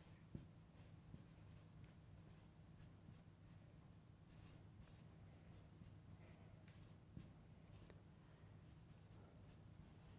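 Marker pen writing on a whiteboard: faint, quick, irregular strokes as the letters are drawn, over a low steady hum.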